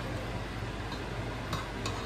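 A spatula stirring and scraping a thick flour roux in a pan, faint, with a couple of light clicks near the end, over a steady low hum.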